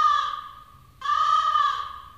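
Crow-cawing sound effect: two drawn-out caws of the same pitch, the second starting about a second in, each fading away. It is the stock gag for an awkward silence.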